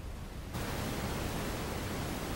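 Steady, even hiss of background noise that cuts in suddenly about half a second in, replacing a quieter room tone.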